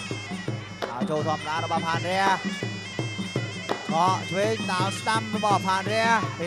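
Traditional Khmer boxing music: a sralai reed pipe plays a wavering, bending melody over a steady drum beat and sharp cymbal clicks.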